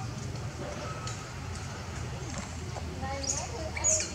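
Macaques calling: soft pitched calls in the second half, then a short shrill squeal near the end, over a steady low rumble.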